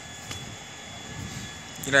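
Steady outdoor background noise with a faint low rumble, in a gap between a man's sentences; his voice comes back at the very end.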